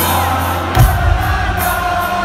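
Live rock concert music heard from within the arena crowd: a band playing with held, sung notes and the audience singing along over a steady bass, with one heavy drum hit a little under a second in.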